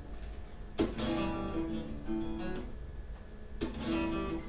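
Acoustic guitar played solo, its notes ringing on, with a new chord struck about a second in and another near the end.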